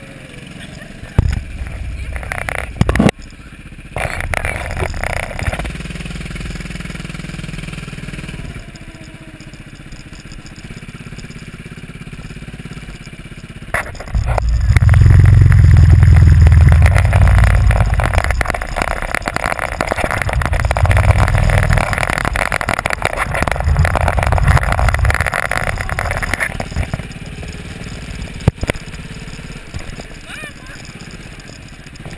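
Go-kart's small engine running as the kart drives round the track, with a louder low rumble through the middle stretch.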